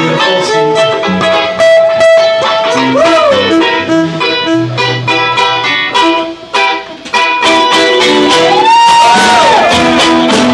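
Live reggae band playing an instrumental passage: electric guitar, violin and drums over a steady rhythm, with a few sustained notes that bend up and down, about three seconds in and again near the end.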